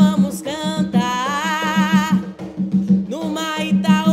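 A woman singing a Umbanda ponto over an atabaque hand drum keeping a steady beat. About a second in she holds one long note with vibrato.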